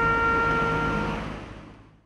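A long held note on a wind instrument, over low background noise. The note ends a little after a second in and the sound fades away to silence.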